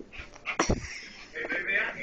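A pet dog making small vocal sounds close to the microphone, with two heavy knocks about half a second in from the camera being handled against it. Television speech plays underneath.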